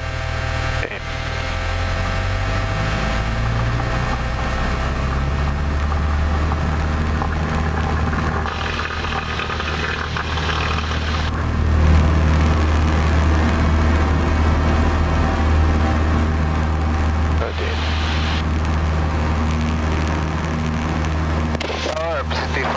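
Cessna 172P's four-cylinder Lycoming engine and propeller running at full throttle on the takeoff roll, a steady low drone that builds in the first couple of seconds and then holds.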